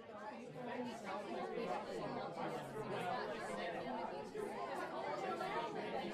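Crowd chatter: many people talking at once, overlapping voices with no single speaker standing out, fairly low in level.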